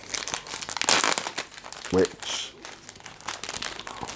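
Clear plastic packaging bag crinkling and crackling as it is handled and pulled open, a dense run of rustles and crackles.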